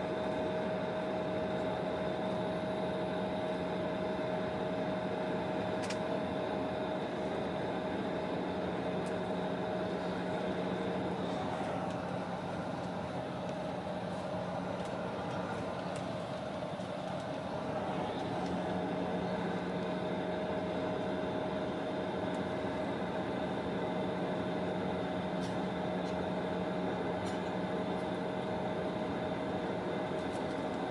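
Steady cabin hum of an Embraer 170 airliner on the ground with its GE CF34-8E turbofan engines at idle, a constant whine running through it and easing slightly in the middle.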